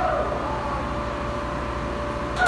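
Steady hum of barn ventilation fans in a sheep shed, with a short bleat from the penned sheep right at the start.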